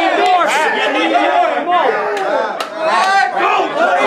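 A small crowd of people shouting and hollering in excited reaction to a battle-rap punchline, many voices overlapping at once, with a few sharp claps cutting through.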